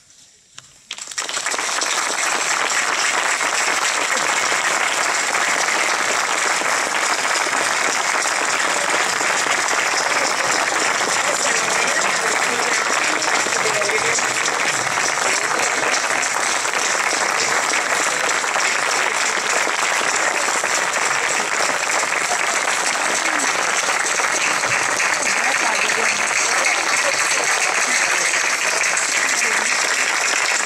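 Theatre audience applauding. The applause starts abruptly about a second in and holds steady.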